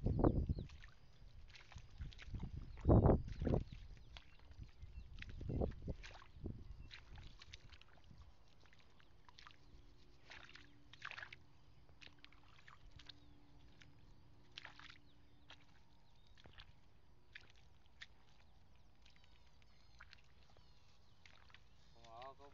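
Footsteps squelching and sloshing through waterlogged, muddy field soil: three heavy wet steps in the first six seconds, then only faint scattered sounds.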